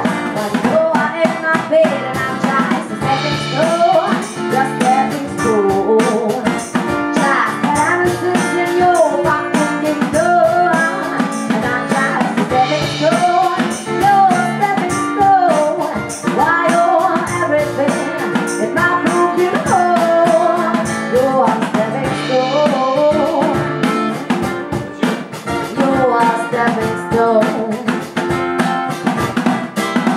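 Live acoustic band music: a woman singing over strummed acoustic guitar and a steady percussion beat.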